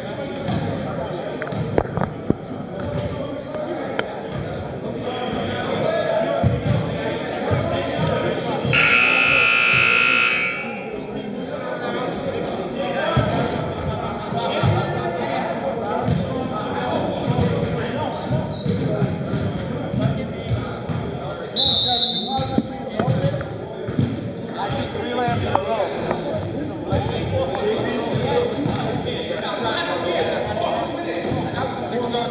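Gymnasium scoreboard buzzer sounding once, a steady tone of nearly two seconds about nine seconds in, marking the end of a timeout. Around it, a basketball bounces and voices chatter, echoing in the large gym.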